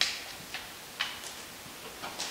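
A few sharp clicks and taps about half a second apart, the first one the loudest.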